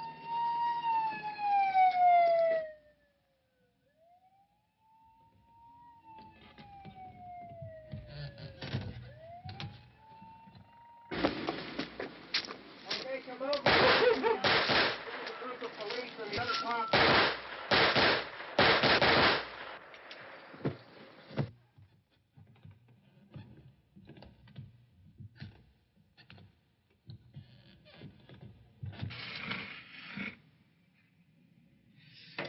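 Siren wailing, its pitch rising and falling, then winding down fainter over the first ten seconds. After that comes a loud stretch of about ten seconds of rapid, sharp noises, followed by quieter scattered clicks.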